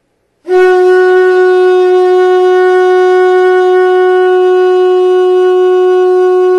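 Shofar (ram's horn) blowing one long blast at a single held pitch, starting about half a second in.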